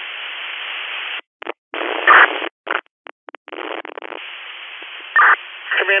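Two-way radio channel carrying hiss and static between transmissions. The hiss cuts out and back in several times, and there are short louder bursts of noise about two seconds in and again near five seconds.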